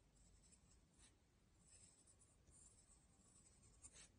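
Very faint scratching of a pencil writing on paper, in short strokes with small pauses between them.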